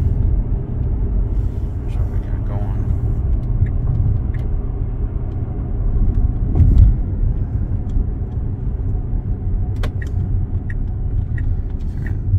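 Road and tyre noise inside an electric Tesla's cabin while driving, with no engine sound: a steady low rumble that swells briefly just past halfway, with a few faint clicks.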